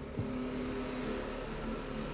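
Steady background hum with a few low steady tones, and one brief soft knock from handling about a quarter of a second in.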